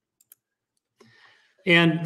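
A quiet pause with a couple of faint clicks, then a man begins speaking near the end.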